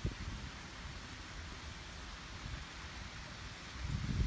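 Wind rumbling unevenly on the microphone over a steady faint hiss, with one small knock right at the start.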